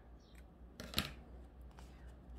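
Scissors snipping the sewing thread at the end of a hand-stitched ribbon bow: one sharp snip about a second in.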